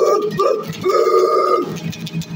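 A man singing loudly in rough, wordless-sounding bursts, two short ones and then one held about a second, to his own strummed acoustic guitar.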